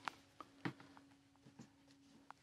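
Near silence in a small room, with a faint steady hum and a handful of light taps and clicks, the clearest about two-thirds of a second in.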